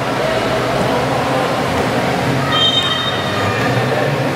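Steady din of a basketball game in a gymnasium hall: a continuous echoing wash of crowd and court noise over a low hum. About two and a half seconds in, a brief high whistle-like tone sounds for about a second.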